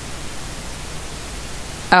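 Steady hiss of recording static, even and unbroken, with nothing else standing out from it.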